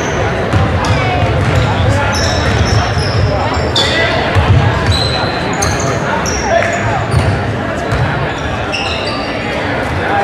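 Basketball game on a hardwood gym floor: sneakers squeak in many short, high chirps as players run and cut, over repeated low thumps of feet and the dribbled ball on the wooden floor.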